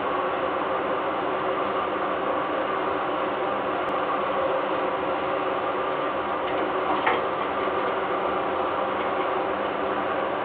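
Steady machine-like hum and hiss from the nest-box camera's microphone, with a single short click about seven seconds in.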